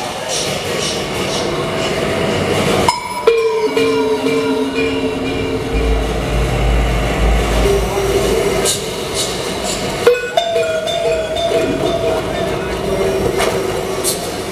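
Live experimental electronic noise music: layered sustained tones and drones over a hiss, cutting out abruptly about three seconds in and again about ten seconds in, with a deep rumble from about six to eight seconds.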